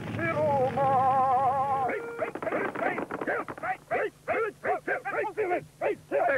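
A cartoon voice holds a sung note with a wide, wavering vibrato for about two seconds, then breaks into a quick run of short, choppy vocal syllables.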